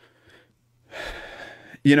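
A person's audible intake of breath through the mouth, lasting just under a second, about a second in, then speech begins.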